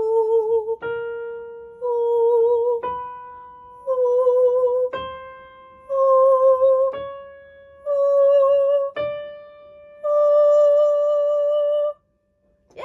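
A woman singing a rising scale in head voice from A4 up to D5 with vibrato, each step given by a piano note struck about once a second. The last and highest note is held about two seconds and then cut off.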